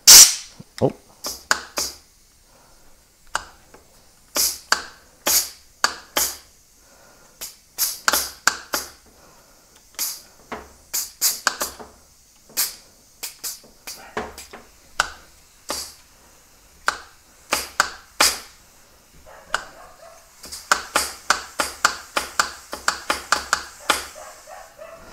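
Repeated short blasts of compressed air from a blow gun into the control port of a VW switchable water pump, working the sliding shield over the impeller, which is sticking. The blasts come singly and irregularly at first, then in a quick run of about three a second near the end.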